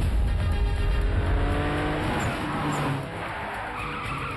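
Trailer soundtrack: music under a heavy low rumble, then a sound of several tones that slowly fall in pitch for about two seconds.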